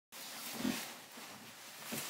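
Movement noise close to a webcam microphone: a soft low thump about half a second in, another near the end, and faint rustling over a steady hiss, as a person in a nylon jacket steps back from the camera.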